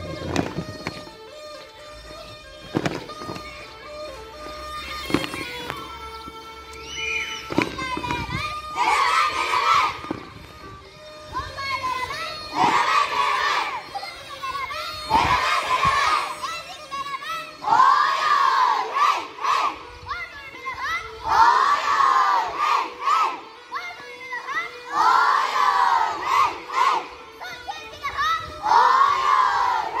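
Tulum, the Black Sea bagpipe, playing a horon dance tune with a steady sustained sound. From about nine seconds in, a group of children shouts together in rising-and-falling calls, repeating every three to four seconds over the piping.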